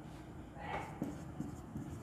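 Marker pen writing on a whiteboard: a faint scratch of a short stroke and a few light taps as letters are written.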